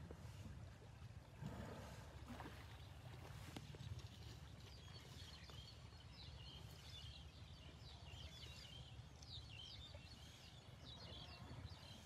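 Faint water sloshing and lapping around an elephant bathing in a river, with a steady low rumble of wind on the microphone. Many small bird chirps join in from about five seconds in.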